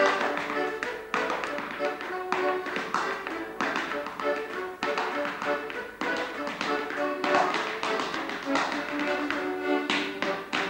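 A piano accordion playing a lively dance tune while a dancer's hard shoes tap and stamp out steps on the floor in time with it.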